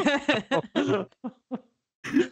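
Human laughter in short voiced bursts, trailing off into a couple of faint breaths after about a second.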